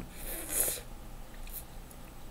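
A man's hissing breath through the lips, under a second long, as his mouth burns from a hot habanero pepper. Two faint clicks follow near the end.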